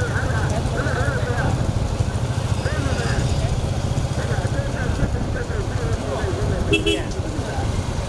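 Motorcycle engines running steadily with a fluttering low drone, with voices shouting over them. A brief high beep about seven seconds in.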